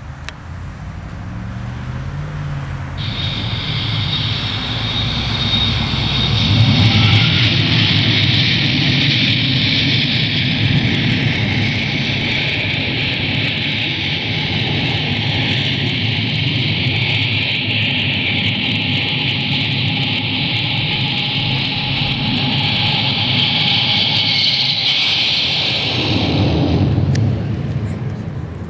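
Recorded F-14 Tomcat jet takeoff with afterburner played through the display's loudspeaker. The jet noise swells over the first few seconds, holds steady for about twenty seconds, then cuts off suddenly near the end.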